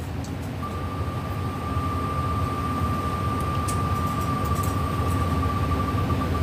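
On-screen spinning name wheel's tick sound from a laptop: the ticks come so fast that they merge into one steady high tone, and they begin to break apart as the wheel slows near the end. A low steady rumble runs underneath.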